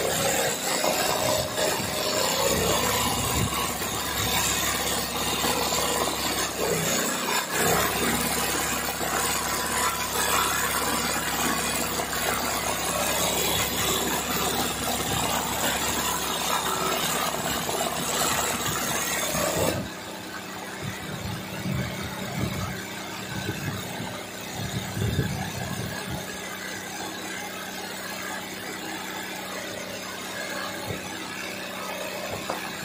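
Sewing machine running continuously as it stitches a satin-fill leaf in hand-guided machine embroidery, the needle going up and down rapidly. About two-thirds of the way through the sound drops suddenly quieter and runs on less evenly.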